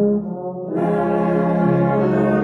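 Brass band playing a slow hymn tune in held chords, with tuba and trombone-range parts underneath. The sound thins and drops briefly between phrases just after the start, then the full band comes back in before the first second is out.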